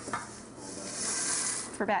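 Noodles tipped from a stainless-steel bowl into a pot of water, a hissing rush that swells about half a second in and fades near the end.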